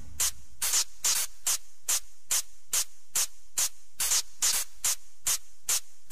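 Closing bars of an electronic dance track: the kick drum has dropped out, leaving a lone hissing hi-hat hitting evenly, about two and a half times a second.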